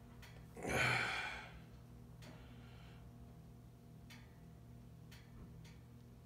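A single loud breath out, about a second in, from a man straining as he stretches and twists a thin metal strip between two pairs of locking pliers. A few faint clicks follow over a steady low hum.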